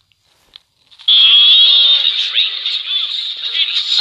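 Several cartoon soundtracks playing over one another, a dense mix of character voices and music that starts abruptly and loudly about a second in, after a near-silent start with a couple of faint clicks.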